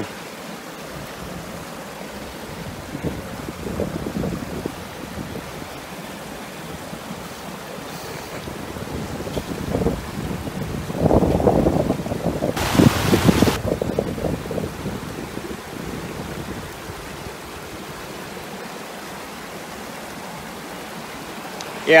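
Shallow mountain stream rushing steadily over rocks. Louder gusts of rough noise on the microphone come around 4 seconds in and again from about 10 to 15 seconds in, strongest near 13 seconds.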